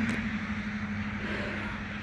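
A steady low mechanical hum over a low rumble, easing off slightly near the end.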